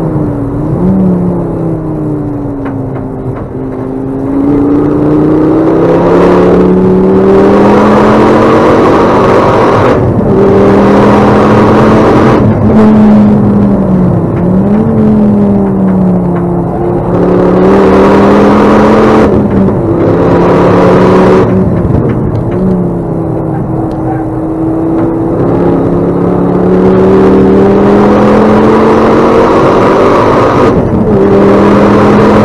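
Ford Focus ST track car's engine heard from inside the cabin, driven hard on track. Its pitch climbs under acceleration and drops sharply several times at gear changes or lifts, with surges of rushing road and wind noise.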